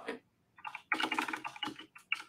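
Fast typing on a computer keyboard: a quick run of key clicks from just over half a second in until near the end.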